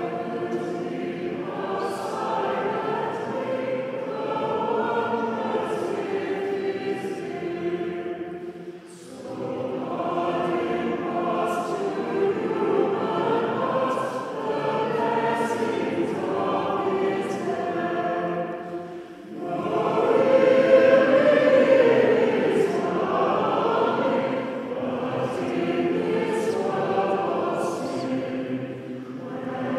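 A choir singing a carol in three phrases, with short pauses about 8 and 19 seconds in; the third phrase is the loudest.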